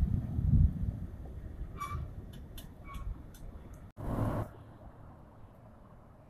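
A car passes along the road with a low rumble of traffic and wind noise, loudest at first and fading over the next few seconds. About four seconds in the sound cuts off abruptly, followed by a short burst of noise and then a quieter background.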